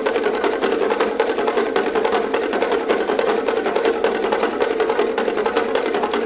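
Tuned bongo drums struck with thin sticks by several players, a fast, continuous interlocking drum pattern at a steady pitch.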